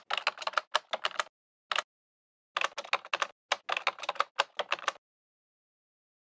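Keyboard typing sound effect: a quick run of key clicks, a gap of about a second broken by a single click, then another run that stops about five seconds in.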